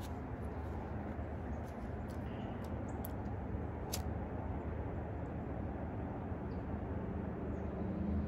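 A handheld lighter flicked repeatedly with the thumb, a few sharp clicks, the loudest about four seconds in, over a steady low outdoor background. It is hard to light in the cold outside air.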